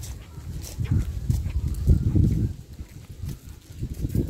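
Footsteps on a brick-paved path as the person filming walks, a few soft clicks spaced under a second apart, over an uneven low rumble on the microphone that swells about one and two seconds in.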